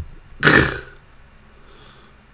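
A single short throaty vocal sound from a man, like a burp or grunt, about half a second in.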